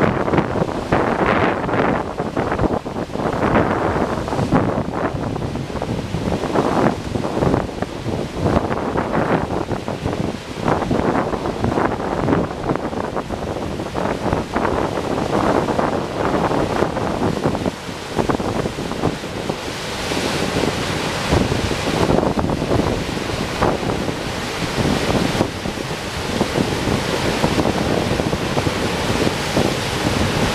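High, muddy river water pouring over a low dam and churning below it, a steady loud rush, with strong wind buffeting the microphone in gusts.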